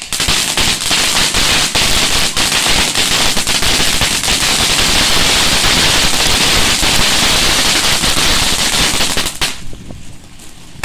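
Fireworks going off at close range: a loud, dense, rapid run of small cracks and bangs that starts suddenly and cuts off about nine and a half seconds in.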